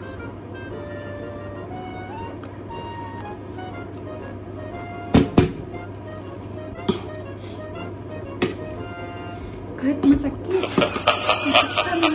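Soft background music with a few sharp knocks of a wire potato masher striking a metal pot while boiled potatoes are mashed, two close together about five seconds in and single ones later. Near the end, livelier music with a singing voice comes in.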